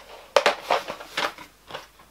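Packaging being picked open with tweezers and torn, a series of short crinkling rustles.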